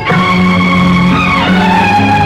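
Instrumental passage of an old Tamil film song: held melody notes over a steady low accompaniment, stepping down in pitch about one and a half seconds in.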